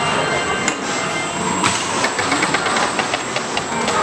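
WonderCoaster simulator ride's arm swinging and turning its rider pod, a steady mechanical rumble with a quick run of clicks and clacks in the middle and latter part.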